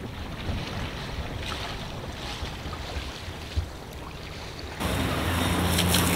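Wind buffeting the microphone and water rushing past the hull of a sailboat under sail. Near the end it cuts suddenly to a louder steady low hum with gushing water.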